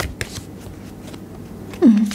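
Tarot cards being handled and shuffled by hand: a couple of sharp card clicks at the start, then soft rustling. A short voiced sound falling in pitch comes near the end.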